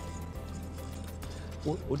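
A utensil scraping and clicking in an enamel pot as a thick béchamel sauce is stirred, with faint background music and a low steady hum under it. A short spoken word comes near the end.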